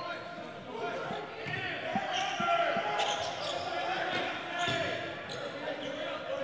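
Game sound from the court in a large, near-empty gym: a basketball being dribbled on the hardwood, with a few short thuds, and players calling out faintly.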